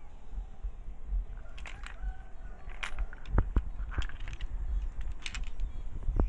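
Rough agate stones clicking and knocking against each other and the rock pile as they are handled and swapped, a scatter of sharp clacks, loudest about halfway through, over a low rumble.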